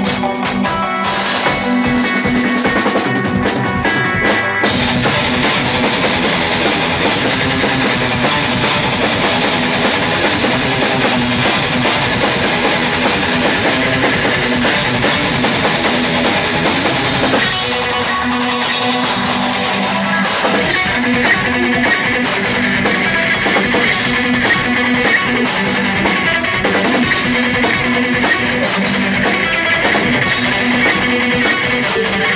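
A live progressive metal band playing loud, with electric guitars and a drum kit. The opening is sparser, then the full band comes in, dense and heavy, about four and a half seconds in. It is heard close to one guitarist's amp, with the vocals thin.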